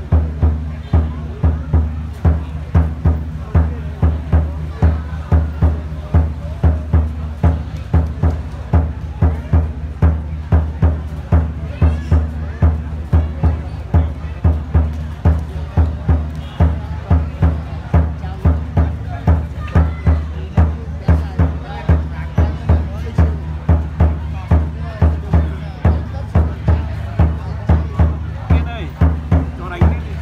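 Drum beaten in a steady, even rhythm of about two beats a second, the drumming that accompanies a traditional Vietnamese wrestling bout, with crowd chatter underneath.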